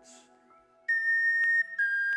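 Native American flute playing a high held note that starts about a second in, then steps down to a slightly lower held note, over faint steady background tones.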